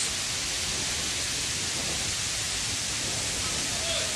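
Heavy tropical rain falling steadily, an even hiss with no breaks.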